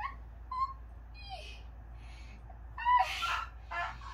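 Short wordless voice sounds: a few brief, high hoot-like or whimpering cries, some falling in pitch, the loudest about three seconds in.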